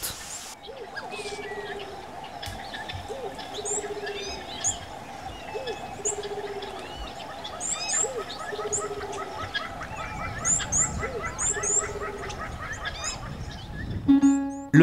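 Tropical rainforest ambience: many birds chirping and whistling, over a steady background hum. A low two-part call, a short rising-and-falling note followed by a buzzy held note, repeats about five times, every two seconds or so.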